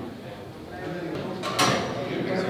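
Indistinct chatter of people in a room, with one sharp clack about one and a half seconds in.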